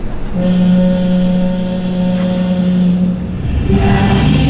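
Recorded ship's horn sounding one long, steady blast of about three seconds at the opening of a harbour-themed yosakoi dance track; the music kicks in near the end.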